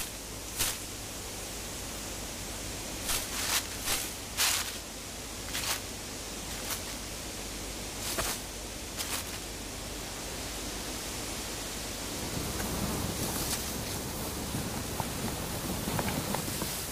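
Steady hiss of an infrared trail camera's own microphone, with several short, sharp rustles in the first nine seconds. A low rumble grows louder about twelve seconds in.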